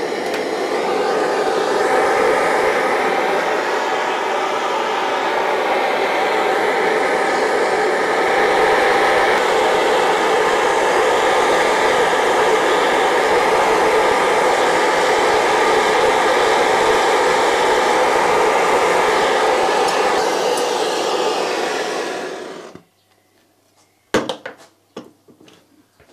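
Hand-held gas blowtorch burning steadily, heating steel nozzles to red heat for hardening before an oil quench. The flame cuts off suddenly about 23 seconds in, followed by a few short clicks.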